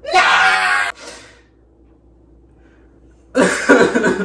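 A man's short, high-pitched scream of dismay lasting under a second, followed by a quiet stretch of about two seconds, and another loud burst of sound near the end.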